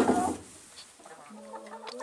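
A broody hen in a nest box making a low, steady drawn-out call during the last second or so. A brief louder sound comes at the very start.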